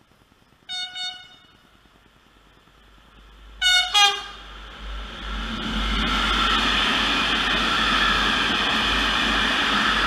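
A locomotive horn sounds two short double blasts, the second pair about three seconds after the first and louder. Then a freight train of tank wagons runs through at speed with a loud, steady rolling rumble and rail noise.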